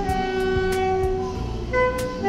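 Saxophone played live, holding long sustained notes; one note gives way to a new, higher note about a second and a half in.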